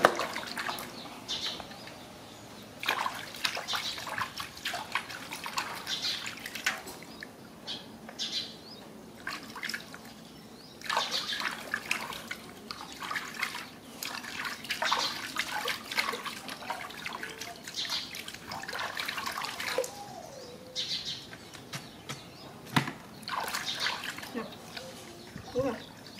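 Water splashing and trickling in an aluminium basin as hands scoop it and pour it over a small monkey, in irregular bursts every second or two.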